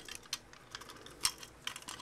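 Plastic toy robot parts clicking and rattling as they are handled and folded, a scatter of light, irregular clicks, the sharpest about a second and a quarter in.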